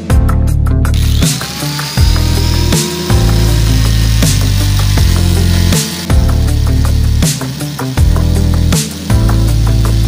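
Background electronic music with a heavy, repeating bass beat, with an electric angle grinder under it that spins up about a second in and then runs steadily, its P240 sanding disc working the clear coat off an alloy wheel.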